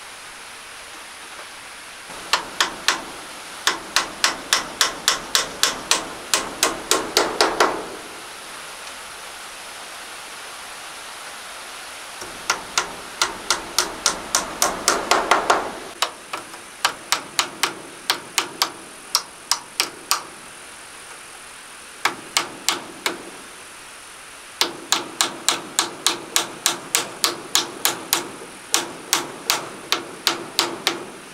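Hammer driving nails into a wooden window frame of slats, struck in quick runs of about three blows a second, with short pauses between the runs.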